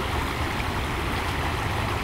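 Shallow creek water running steadily over rocks, a continuous even rush.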